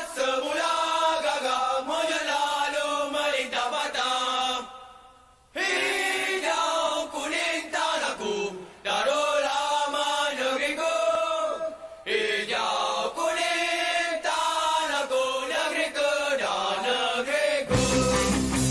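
A group of voices chanting a football club anthem unaccompanied, pausing briefly about five seconds in. A strummed guitar comes in at the very end.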